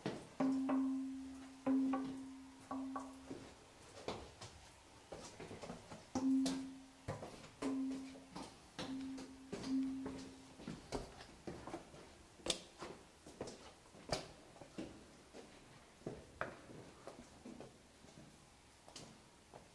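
A cave's flowstone curtain (a natural stone 'qin' or lithophone) slapped by hand, ringing with one note over and over: three strikes, a pause, then four more, each dying away in under a second. Scattered clicks and knocks follow in the second half.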